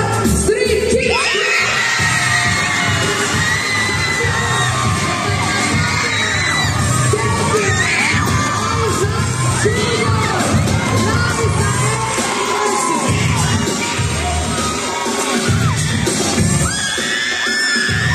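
Crowd of young people cheering and shouting over loud music.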